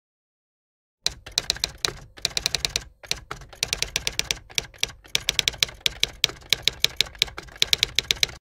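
Manual typewriter typing: rapid keystrokes, about six to eight a second, in runs broken by short pauses, starting about a second in.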